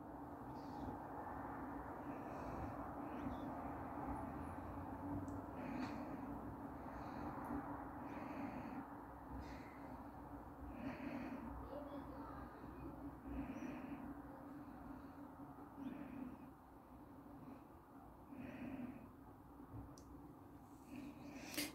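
Faint, soft dabs and scrapes of a metal spoon working thick soap batter into peaks on top of a loaf mould, coming every second or two, over a steady low hum.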